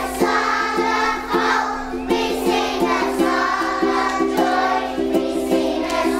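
A group of young children singing together in unison over a musical accompaniment, whose low note pulses about three times a second.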